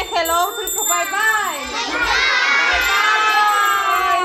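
A group of children calling and shouting over one another, then from about halfway through joining in one long drawn-out shout.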